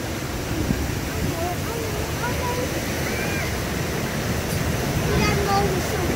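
Steady rush of churning water around a whitewater raft ride, with faint voices of other riders over it.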